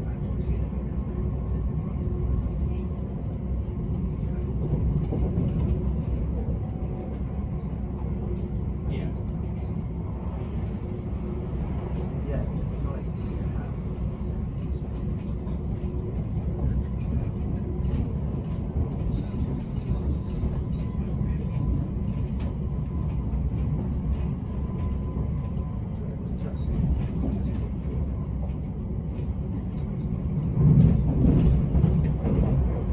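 Inside the passenger coach of a British Rail Class 387 Electrostar electric multiple unit running at speed: a steady low rumble from the wheels on the rails, with a faint steady hum over it.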